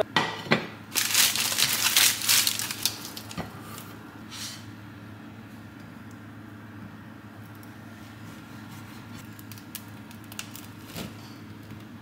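Crusty sourdough loaf being sliced with a serrated bread knife on a plate. A crackly crunching is loudest in the first few seconds, then softer cutting over a steady low hum.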